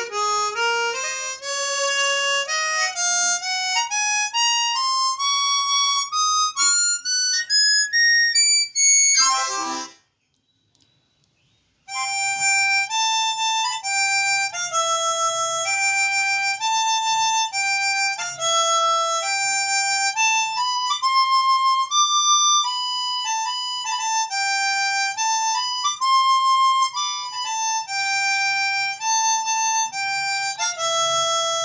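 Conjurer 12-hole chromatic harmonica with phosphor-bronze reeds played solo: single notes climbing step by step from low to high across its three octaves over about ten seconds, ending in a quick smear of notes. After a pause of about two seconds, a slow melody of held notes in its middle range.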